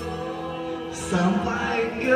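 Karaoke backing music with a man singing over it into a handheld microphone; his voice comes in louder about a second in.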